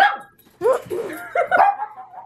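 Small fluffy dog barking and yipping several times in quick succession: a sharp bark at the start, then a run of short pitched yips. The dog is protesting that the petting has stopped.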